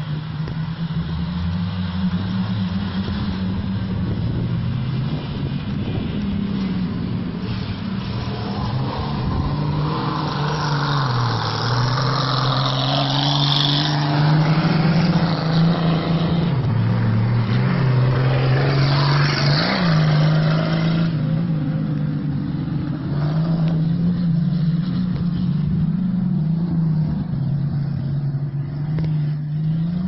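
Six-cylinder Turismo Carretera race car engine running hard on a dirt road, its pitch falling and rising with gear changes and throttle, with a sharp dip and recovery at about twenty seconds. A louder rushing noise of tyres on loose dirt joins it from about ten to twenty seconds in.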